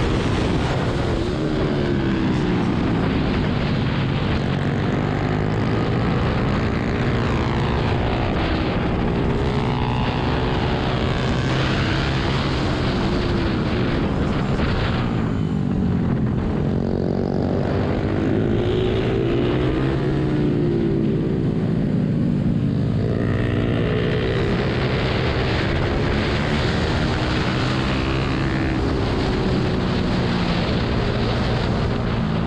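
Ohvale 110M minibike's small single-cylinder four-stroke engine at race pace. The revs climb and drop again and again through gear changes, sink low around the middle as the bike brakes for a tight corner, then climb as it accelerates out. Wind rushes over the microphone.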